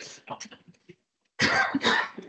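A man coughs, a sudden loud burst a little past halfway, after a brief pause in which his voice trails off.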